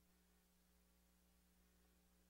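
Near silence: a faint, steady electrical hum.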